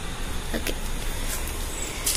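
Steady low background rumble, with a few soft rustles and crunches of hands pressing loose potting soil into a plastic pot.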